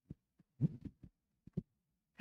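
A few soft, short low thumps spread through a quiet pause, the loudest a little after half a second in.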